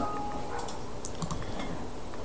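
A few faint, light clicks of computer use over low room hiss.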